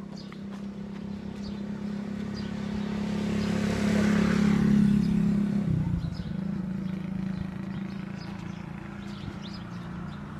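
A motor vehicle driving past on the road: its engine hum and tyre noise build over several seconds, peak about four to five seconds in, and the engine note drops as it goes by, then fades.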